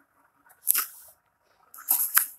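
Close handling noise: a short crackle under a second in, then a cluster of sharper crackles near the end.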